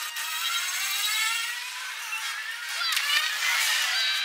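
Film soundtrack of a futuristic saucer-shaped flying craft (a velocipod) whining as it speeds through the jungle, its pitch sliding down and then rising again as it sweeps past, sounding thin with no bass.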